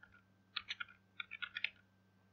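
Computer keyboard being typed on: two quick runs of key clicks as a table name is entered into a line of code.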